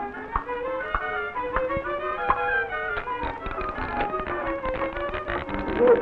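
Cartoon film score: a bowed-string melody with a run of short percussive taps, sparse at first and then rapid and dense in the second half.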